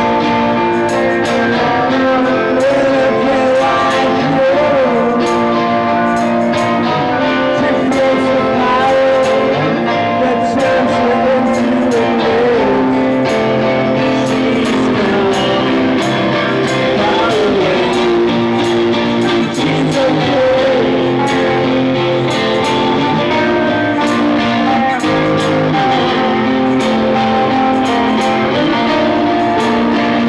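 Live rock band playing: an electric guitar strummed under a male lead vocal, over a steady beat.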